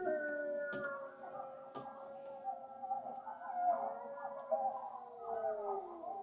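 Wolves howling in overlapping long notes. One long howl holds steady, then slides down in pitch near the end.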